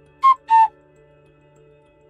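Two-note electronic message-tone chime: two short beeps about a third of a second apart, the second slightly lower. Faint steady background music runs underneath.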